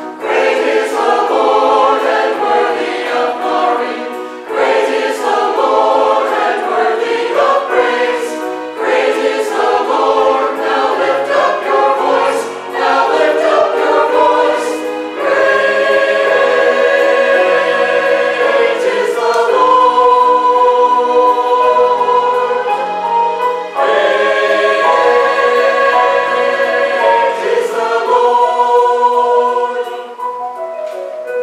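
Mixed church choir of men and women singing in harmony. The phrases move quickly at first, then about halfway through settle into long held chords, with short breaks between phrases.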